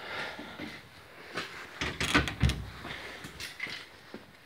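Rustling handling noise from a handheld camera being carried through a garage, with a few light knocks and one duller thump about halfway through.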